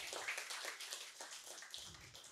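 Audience applauding, a thin, quick patter of clapping that gradually dies away.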